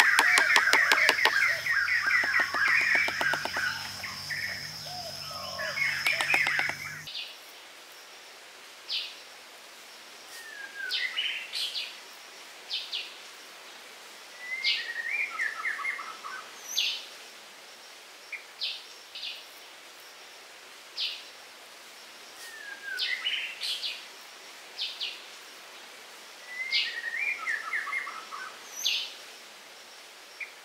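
Birds chirping and singing. For the first seven seconds it is dense and loud, with a steady high-pitched buzz, and then it cuts off suddenly. After that one bird repeats short phrases of quick falling chirps and sharp high notes every few seconds against a quiet background.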